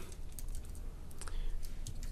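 Computer keyboard typing: a few scattered, irregular keystrokes.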